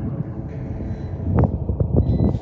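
A steady low rumble with a few dull thumps, one about a second and a half in and more near the end, from a night bombardment heard at a distance.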